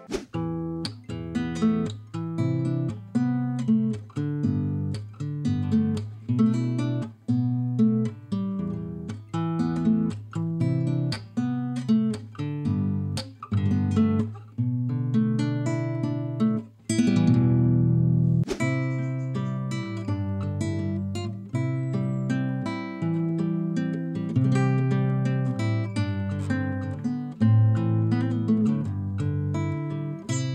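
Nylon-string classical guitar (a Rockdale) played fingerstyle: a run of plucked notes over sustained bass notes. A little past halfway there is a single full strummed chord.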